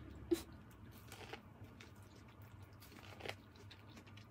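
Quiet chewing of Mexican street corn on the cob, the kernels crunching softly in the mouth. There are a couple of slightly louder crunches, about a second in and again a little past three seconds.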